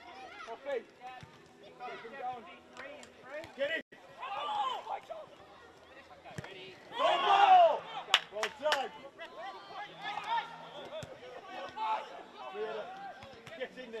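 Football players shouting and calling to each other on the pitch, with a loud shout a little past halfway followed by three quick sharp knocks.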